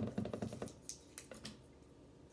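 Candy wrapper crinkling as a small fruit chew is unwrapped by hand: a soft run of quick, crisp crackles that thins out after about a second.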